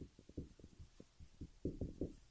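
Dry-erase marker writing on a whiteboard, heard as faint, irregular low taps, several a second, as the letters are stroked out.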